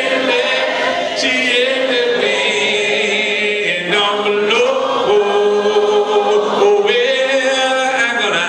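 A cappella gospel singing: a male voice with others singing along, no instruments, in long held notes that waver in pitch.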